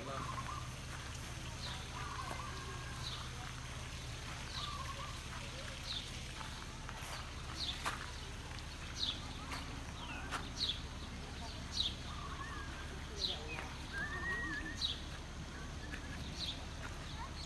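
A bird giving a short, high, falling chirp about every second and a half, over a steady low hum, with a few lower calls or distant voices in between.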